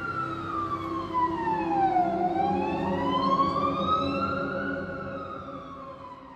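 A wailing siren. Its pitch falls slowly, rises again over a few seconds, and starts to fall once more, over a steady low drone.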